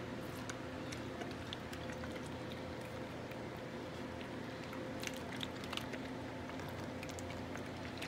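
Water being sprinkled onto the back of a stretched canvas: faint, scattered light ticks and drips over a steady low hum.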